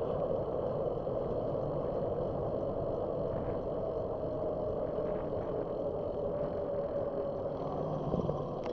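Steady rush of wind on the microphone and tyre noise from a bicycle rolling along an asphalt street.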